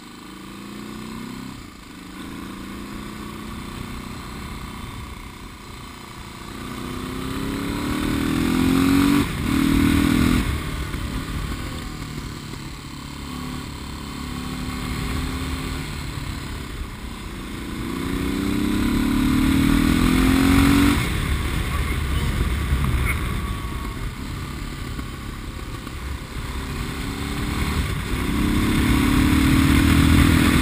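Suzuki DR650 single-cylinder four-stroke, bored out with a 790 kit and hotter cam, riding in a high gear. The engine's note rises and swells through several throttle roll-ons, easing off between them, as the rider works the throttle to feel it pull and seat the new rings.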